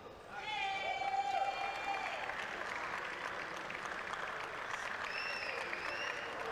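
Audience applauding a jiu-jitsu winner, a steady patter of clapping. A long, high call rises over it about half a second in, with another short call near the end.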